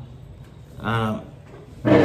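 A man's speaking voice broken by pauses: a short voiced syllable about a second in, then a loud, rough-edged syllable near the end.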